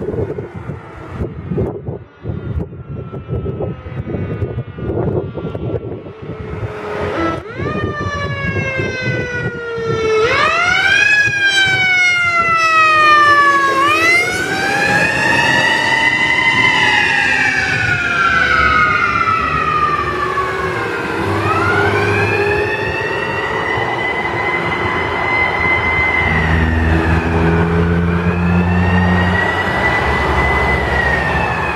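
Fire truck siren coming closer. After several seconds of gusty wind noise on the microphone, the siren starts with quick rising-and-falling sweeps, then slows into long, repeated rise-and-fall wails. A low rumble builds under it near the end.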